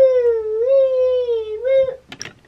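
A young child's voice holding one long note for about two seconds, wavering slightly in pitch and stopping abruptly.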